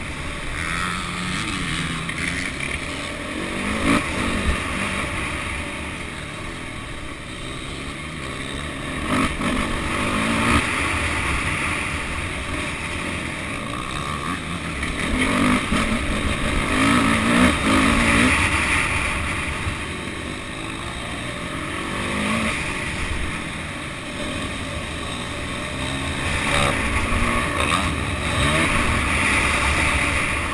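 Motocross bike engine heard from an onboard camera, revving up and easing off again and again as the bike rides over the dirt track, loudest about two-thirds of the way through.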